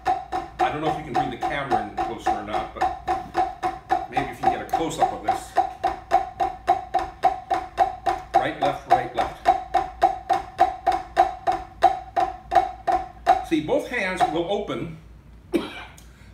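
Alternating flams played with wooden drumsticks on a rubber practice pad, each stroke a short ringing tap in an even, steady rhythm that stops about thirteen seconds in.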